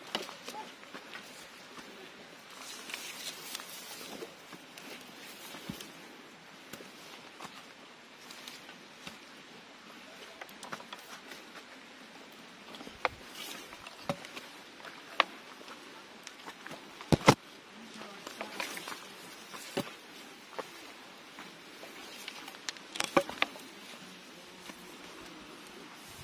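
Footsteps and brushing through undergrowth on a forest trail, with scattered sharp snaps or knocks; the loudest come about two-thirds of the way through and again near the end. Beneath them runs a steady insect hum from the forest.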